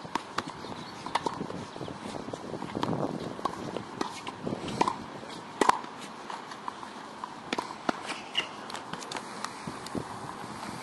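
Tennis balls bouncing on a hard court and being struck by rackets: irregular sharp knocks, the loudest about five and a half seconds in, with footsteps and shoe scuffs on the court between them.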